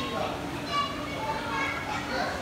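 Children's voices, high-pitched talking and calling out over the chatter of a crowd.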